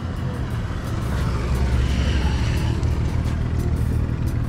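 Road traffic: a steady low engine rumble that swells through the middle, as of a vehicle passing.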